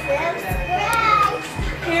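Excited children's voices over background music with a low thudding beat.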